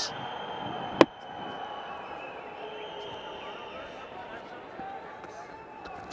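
A single sharp crack of a cricket bat striking the ball about a second in, over the steady murmur of a stadium crowd.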